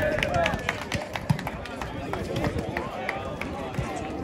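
Players' and spectators' voices calling out during an outdoor volleyball rally, with running footsteps on the court and scattered sharp knocks and slaps throughout.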